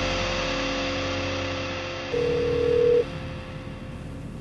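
The held last chord of a heavy-metal electric-guitar intro fades out. About two seconds in, a telephone ringing tone sounds once for about a second as a call is placed.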